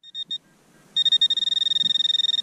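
Handheld metal-detecting pinpointer in a freshly dug hole: two short high beeps, then about a second in a steady high-pitched alarm tone that keeps sounding, the signal that the tip is right beside a metal target.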